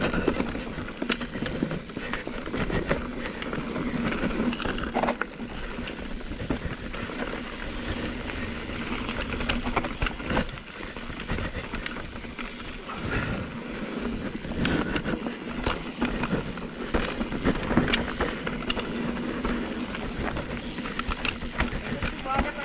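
Mountain bike riding down a dirt trail: continuous rolling noise of tyres over dirt and rocks, with frequent rattles and knocks from the bike.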